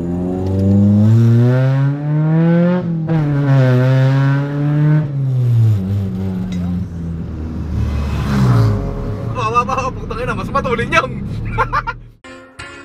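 Car engine heard from inside the cabin, accelerating with its pitch rising for about three seconds, dropping suddenly at a gear change, then climbing and holding before easing off as the car slows.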